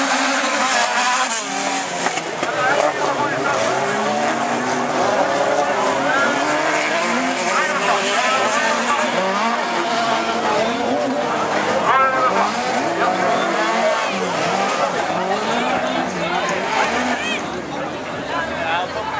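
Several autocross race cars' engines revving up and down together, many rising and falling engine notes overlapping without a break as the pack races round the dirt track.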